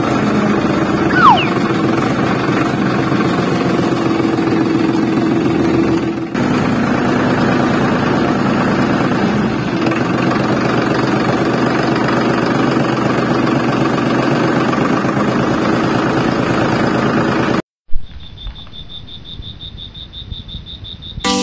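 Tractor engine running steadily with a fast rattling chug, with a short dip about six seconds in. It cuts off abruptly near the end, leaving only a faint steady high tone.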